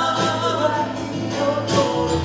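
Live band music: male vocals, possibly two voices in harmony, over acoustic guitar, with drum hits about every three-quarters of a second.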